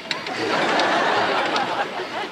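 A sitcom studio audience laughing, a steady wash of crowd laughter right after a joke.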